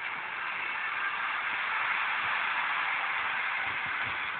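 FM static hiss from a Degen portable radio's speaker, steady, with no music coming through: the weak long-distance FM signal has faded into noise.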